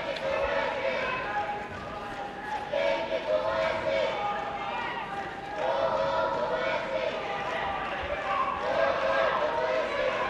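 Arena crowd: many spectators' voices calling out in long, held shouts that come and go in waves, echoing in a large hall.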